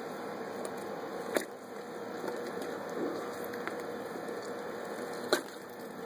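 Quiet wet handling as a lamb carcass's innards are cut free and pulled out of the body cavity, with two sharp clicks, one about a second and a half in and one near the end.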